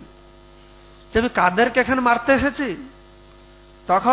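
Steady electrical mains hum in the pauses, with a man's voice speaking into the microphone for about two seconds in the middle.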